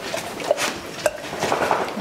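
Two sharp clinks about half a second apart, then softer clatter, as dogs are hand-fed treats.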